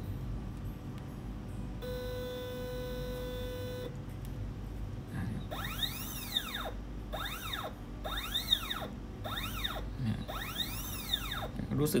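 Small stepper motor on a linear stage, driven by a Vexta SG8030J pulse controller. It first gives one steady whine of about two seconds. Later comes a series of about five short moves, each a whine that rises in pitch and falls again as the motor accelerates and decelerates along the controller's speed ramp.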